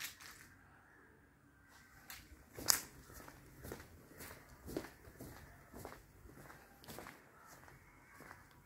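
Faint footsteps of a person walking, about two steps a second, beginning about two seconds in.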